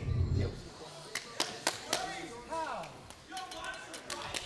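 Indistinct voices of people around an MMA cage, not the commentary, with a low thud at the very start and a quick run of four sharp clicks about a second in.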